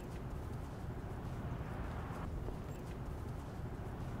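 Steady outdoor background rumble with a few faint clicks.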